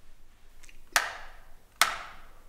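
Two slow, sharp hand claps, a little under a second apart, each followed by a short echo.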